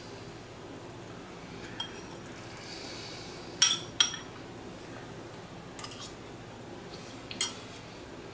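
A metal utensil clinking against a bowl while mac and cheese is scooped up: about six short ringing clinks, the two loudest close together about halfway through, and another near the end.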